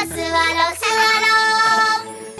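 A child's voice singing a children's song over backing music, repeating "suwarou" (let's sit), with the last note held for about a second.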